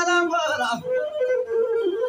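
Male azmari voice singing a melismatic Ethiopian song over a masinko, the one-string bowed fiddle. The singing stops under a second in, and the masinko plays on alone, bowing a melody with slides down in pitch and back.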